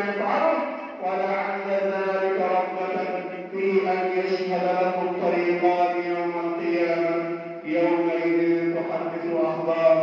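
A man chanting in Arabic into a microphone, long held melodic phrases with short pauses for breath between them.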